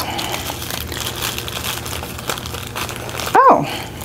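Tissue paper rustling and crinkling as it is unfolded by hand. Near the end comes a single short, high call that rises and falls, the loudest sound here.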